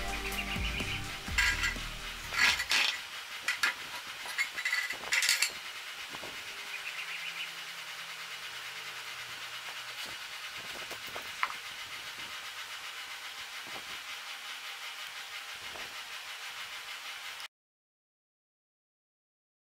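Low music dies away in the first three seconds while a few sharp metallic clinks and knocks sound; then only a steady faint hiss with the odd click, cutting off suddenly shortly before the end.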